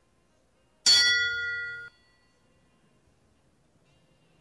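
Show-jumping arena start bell ringing once, about a second in, and cutting off suddenly after about a second: the signal for the rider to begin her round.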